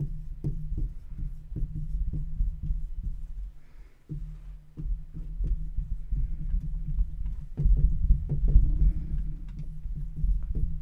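Marker writing on a glass lightboard, picked up as an irregular run of low thuds and rubbing strokes, with a brief pause about four seconds in.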